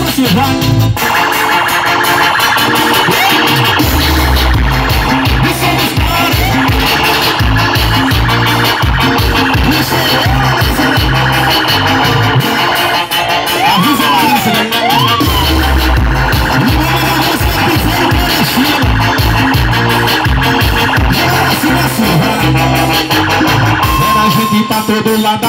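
Live band playing through a PA system with no words sung: keyboard over percussion and a heavy, pulsing bass, loud and steady throughout.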